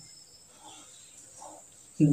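Faint room tone with the soft scratching of a marker pen writing a word on notebook paper.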